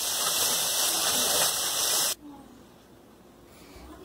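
Dry fish curry simmering in a kadhai, a steady sizzling hiss that cuts off abruptly about two seconds in, leaving quiet room tone.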